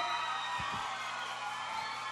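Background music of steady held chords, with studio-audience applause and cheering underneath.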